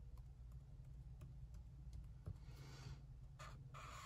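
Faint felt-tip marker drawing on paper: a few light ticks as the tip touches down for small strokes, and a short scratchy stroke about two and a half seconds in, over a low steady hum.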